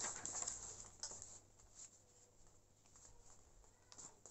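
Paper pattern sheet being slid into a plastic laminating pouch: soft rustling and sliding of paper against plastic in the first second or so, then near silence.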